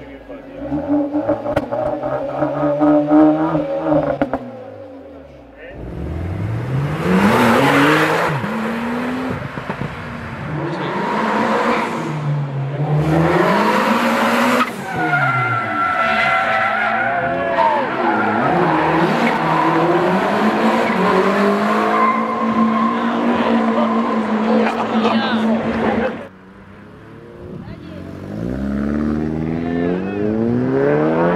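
Car engine sounds in a run of short clips. First a Renault Mégane RS is revved up and down while parked. Then a car accelerates hard and slides through a corner with tyre squeal, its engine pitch climbing and dropping again and again, and near the end another car pulls away with rising revs.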